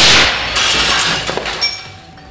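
A very loud bang from the shot striking the window-glass-and-polycarbonate laminate, then the glass shattering, with shards falling and tinkling for about a second and a half before dying away.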